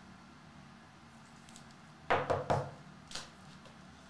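Trading cards being handled on a padded table: two quick knocks about two seconds in and a third about a second later.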